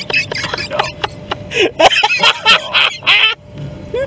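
People laughing hard in irregular bursts inside a moving vehicle's cab, with a low steady rumble of the vehicle underneath.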